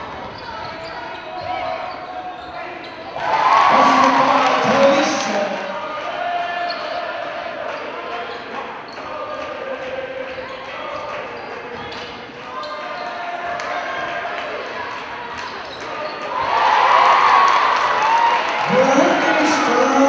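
Live gym sound of a basketball game: a ball bouncing on the hardwood court in a large hall, with voices calling out. It swells twice into louder shouting, about three seconds in and again a few seconds before the end.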